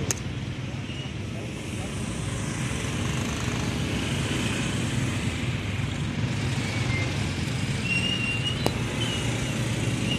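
Traffic noise heard from a motorcycle in slow city traffic: a steady low rumble of engines and road. Near the end come a few short, high squeaks and a single sharp click.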